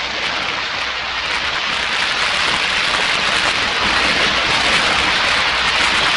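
A steady rushing noise that slowly grows louder, set between passages of orchestral and organ music.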